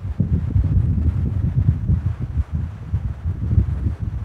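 Low, uneven rumble of air noise on the microphone, with no other sound standing out.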